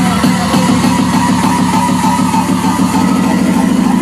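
Loud dance music from a DJ set, mixed live on CDJ decks, with a fast repeating pulse.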